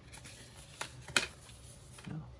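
Card-stock documentation inserts being handled: faint paper rustling with two short snaps about a second in, the second louder.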